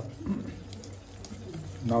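Wire whisk stirring thick, lumpy kaya in a stainless steel pot: faint scraping with a few light ticks of the wires against the pot.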